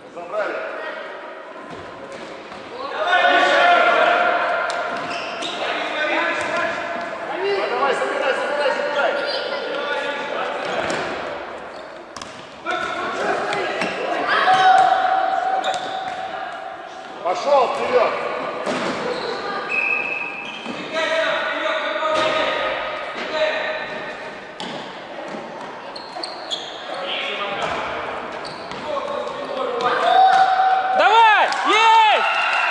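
Indoor youth football match in a large gym hall: voices calling and shouting throughout, mixed with the thuds of the ball being kicked and bouncing on the wooden floor.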